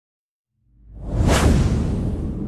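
A whoosh sound effect with a deep low rumble under it. It swells in after about half a second, peaks about a second and a half in, then slowly fades.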